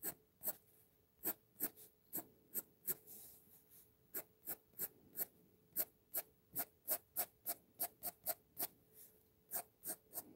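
HB graphite pencil flicking short, quick strokes across sketchbook paper, about two to three strokes a second, with a brief pause about three seconds in.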